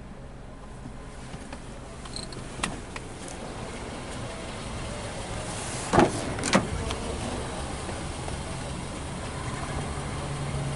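Two sharp clicks about six seconds in, half a second apart, as the rear door latch of a Mazda6 sedan is released and the door opened. A few fainter clicks come earlier, over a low steady hum.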